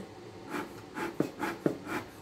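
Bellows of a new, empty stainless-steel bee smoker being squeezed by hand, puffing air from the spout in short breaths about twice a second. Several strokes carry a short click from the bellows.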